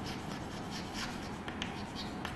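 Chalk writing on a chalkboard: faint scratching of the chalk strokes, with a few light ticks.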